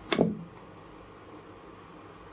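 A single knife chop through a tomato onto a wooden chopping board, a short sharp knock just after the start, followed by a couple of faint ticks of the blade.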